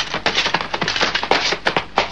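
Fight sound effects: a rapid, irregular run of dry knocks and thuds, several a second, from blows and scuffling in a hand-to-hand fight.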